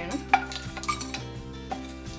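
Dry whole spices and dried red chillies tipped from a plate into a dry nonstick pan, landing with a few light clicks and rattles, mostly in the first second.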